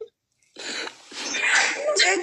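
A brief dropout of sound, then a person's loud, breathy outburst of air that swells about a second and a half in and runs into speech.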